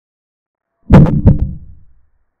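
A sound effect for a chess piece being moved on a digital board: two heavy thuds about a third of a second apart, then a low ring fading away over most of a second.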